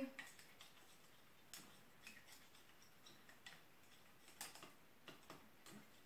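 Faint, scattered light ticks of a small mixing spoon knocking against a petri dish while stirring urea crystals into water to dissolve them.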